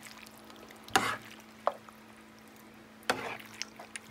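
A spoon stirring thick, creamy pasta in a skillet, with about three short knocks or scrapes of the spoon against the pan, about a second in, a moment later and near the end. A faint steady hum runs underneath.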